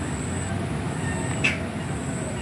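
A steady low rumbling noise, with one sharp, short click about one and a half seconds in.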